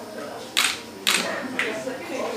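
A camera shutter firing three times in quick succession, about half a second apart, over faint background talk.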